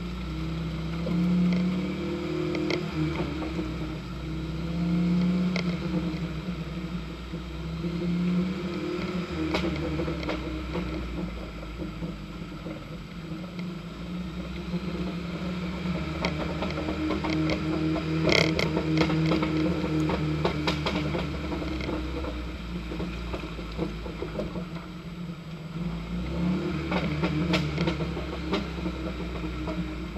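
A 4x4's engine labouring at low speed through mud and ruts, its revs rising and falling every few seconds, with knocks and rattles from the body and suspension as it bumps over the ruts; the rattling is busiest about two-thirds of the way through.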